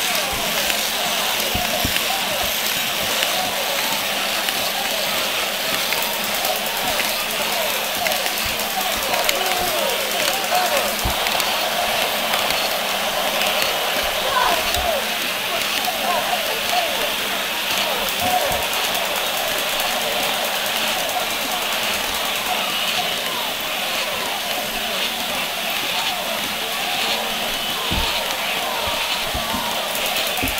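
Indistinct voices, too far or faint to make out words, over a steady hiss, with a few faint knocks.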